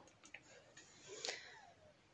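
Near silence: quiet room tone with a few faint clicks and a soft, brief rush of noise about a second in.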